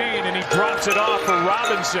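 A voice over a music track.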